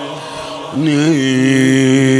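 A man's voice chanting a Persian religious anthem (sorood) without instruments: a softer held tone, then about three-quarters of a second in a louder note that wavers briefly and is then held steady.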